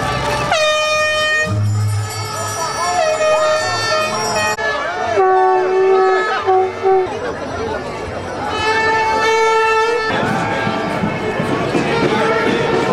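A horn blown in a series of long blasts, held notes at different pitches, some of them wavering, over crowd noise. In the last couple of seconds the horn stops and the crowd's voices are left.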